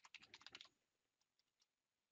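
Faint typing on a computer keyboard, a quick run of keystrokes that stops about two-thirds of a second in.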